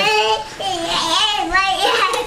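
A child's high sing-song voice, with long held notes and a wavering one near the end.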